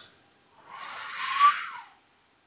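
A person's breath close to the microphone, about a second long and hissy, with a brief whistling note near its end.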